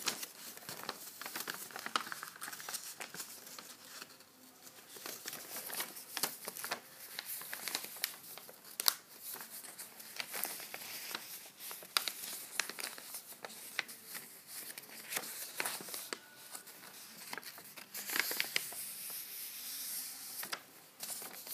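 A sheet of paper rustling and crinkling in the hands as it is folded into a paper plane, with irregular sharp crackles as the folds are made and pressed. The handling gets busier near the end.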